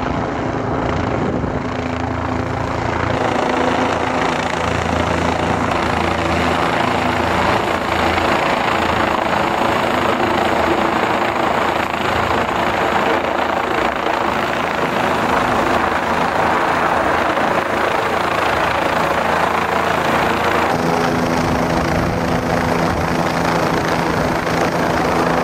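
Helicopter turbine and rotor running close by in a steady hover, a loud even rush of blade noise over a low steady hum. The hum grows stronger a few seconds before the end.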